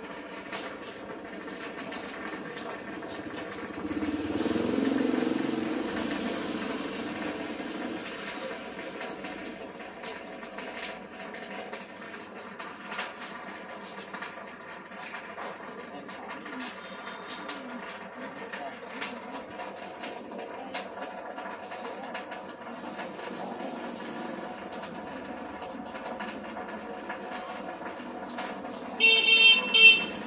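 Busy street-market bustle with background chatter. A motorbike passes about four seconds in, and a short, loud motorbike horn sounds just before the end.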